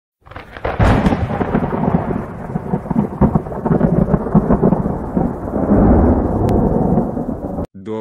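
Thunderstorm sound effect: a crack of thunder about a second in, then continuous rolling rumble with crackles that cuts off suddenly near the end.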